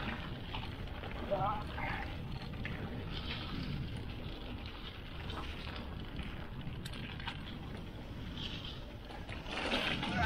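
Mountain bike descending a dry dirt trail: steady wind rush on the camera microphone mixed with tyre rumble over the dirt, with a few light clicks from the bike about seven seconds in.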